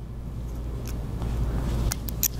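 Steady deep rumble of background noise that grows slightly louder, with a faint click near the middle and a sharper click near the end.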